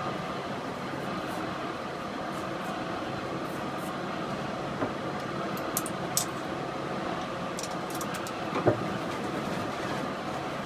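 Steady mechanical rumble of plant machinery around a condenser tube sheet, with a few sharp clicks in the second half and one louder knock near the end as cleaning projectiles are pushed by hand into the tube ends.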